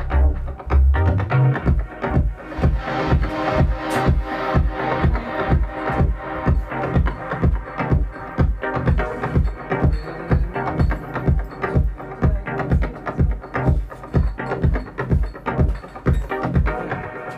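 Electronic deep house track played back from Ableton Live: a four-on-the-floor kick drum at about two beats a second under sustained chords. A deep bass line drops out about a second and a half in, leaving the kick and chords.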